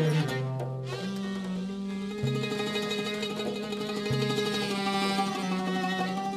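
Traditional Arabic music played on plucked and bowed string instruments, with sustained melody notes over a low bass line that shifts pitch every second or two.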